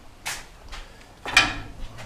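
Metal pen gate rattling and clanking as it is handled, two short sounds, the second louder about a second and a half in.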